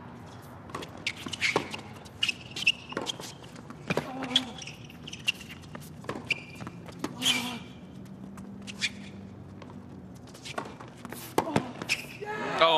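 A tennis rally on a hard court: a string of sharp racket strikes and ball bounces, with the players' footsteps on the court between them.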